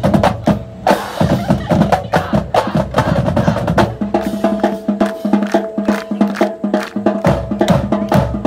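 High school marching band playing: drumline strikes in a quick steady beat, joined about halfway by held brass notes.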